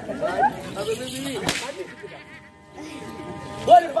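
Street-theatre actors' voices, with one sharp crack about a second and a half in. Near the end a steady held tone comes in and a voice rises in a loud call.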